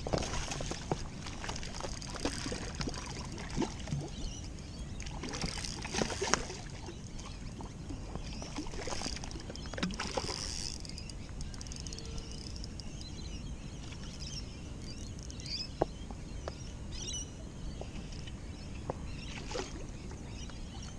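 A small hooked fish splashing at the water's surface in several short bursts as it is played in on light spin tackle, over water lapping against the rocks. Occasional short knocks come through.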